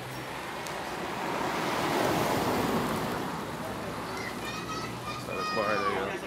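Rushing road noise swells and fades over about three seconds, with people's voices near the end.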